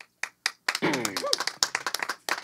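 A few people clapping by hand at the end of a song, starting with scattered claps and quickly filling in, with one voice briefly calling out about a second in.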